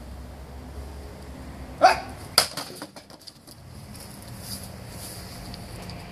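A man's short shout, then about half a second later a single sharp crack as a Böker Magnum Blind Samurai sword blade strikes an upright pole target, followed by a few lighter knocks. The blade bites only partway into the target and does not cut clean through.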